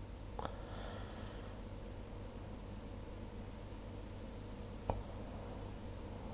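Quiet room tone, a low steady hiss and hum, with two faint clicks: one about half a second in and one near the end.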